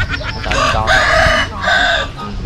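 A rooster crowing loudly, one long call with a brief break about a second and a half in before its last part.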